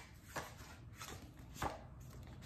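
Paper cards being handled and sorted from a stack: two short, soft taps, about a third of a second in and again past halfway, with faint paper handling between.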